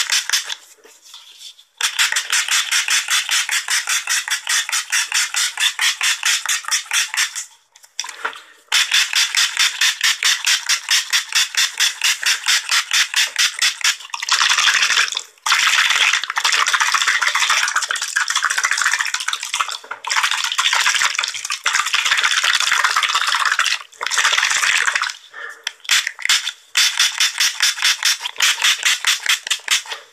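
Spray bottle squirted very fast, about seven short hissing sprays a second, in long runs broken by brief pauses. Through the middle stretch the sprays come so close together that they run into an almost continuous hiss.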